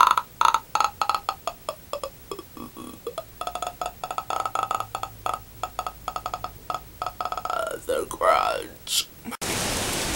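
A young woman's hoarse, wordless croaking and clicking vocal noises, a rapid crackle of pulses with a couple of sliding pitch sweeps near the end; her throat is sore. About nine seconds in, the sound cuts suddenly to steady wind blowing on the microphone.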